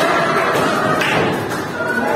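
A group of women laughing loudly together in a room, with a thump about a second in.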